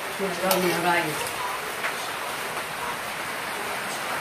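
Steady hiss of rain falling. A voice speaks briefly in the first second.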